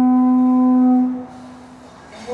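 Hawaiian conch shell trumpet (pū) blown as ceremonial protocol: one long, steady, low note that drops away a little over a second in, trailing off much quieter.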